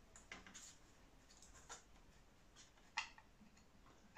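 Near silence with a few faint ticks and scratches from a pencil marking the bend position on a steel wire pushrod. The clearest tick comes about three seconds in.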